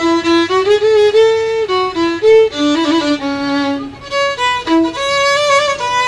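Solo violin played with the bow: a melody of held single notes stepping up and down, with a brief break between phrases about four seconds in.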